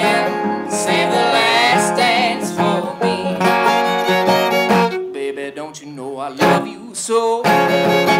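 Old-time string band playing live: fiddle, acoustic guitar and banjo together in an instrumental passage with no singing. About five seconds in, the playing thins out to lighter, separate guitar strums.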